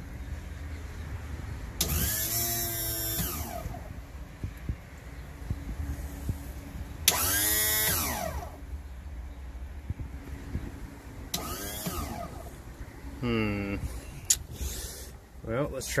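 Electric power trim pump motor of a Mercury outboard switched on in three short runs. Each run starts abruptly and whines down in pitch over a second or two.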